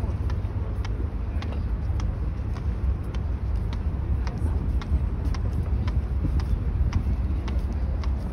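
Footsteps on a wooden boardwalk deck at walking pace, about two clicks a second, over a low rumble that rises and falls.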